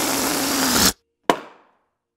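End of a closing jingle: a steady, noisy rush cuts off abruptly about a second in, then a single sharp bang rings out briefly before silence.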